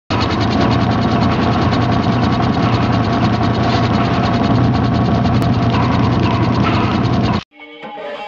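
A loud, steady mechanical clattering sound effect made of a rapid run of clicks, like ratcheting gears. It cuts off suddenly a little before the end, and a guitar begins to ring out.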